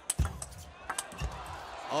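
Table tennis rally: the ball is struck by rubber-faced rackets and bounces on the table, giving several sharp, irregularly spaced clicks.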